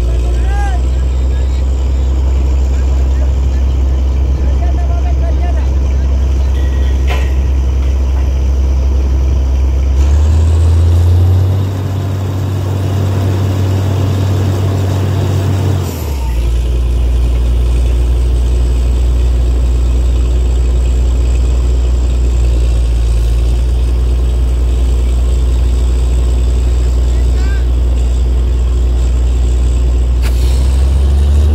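Truck-mounted borewell drilling rig's diesel engine running steadily with a deep, even drone. About ten seconds in it runs faster for roughly six seconds, then drops back suddenly to its earlier speed.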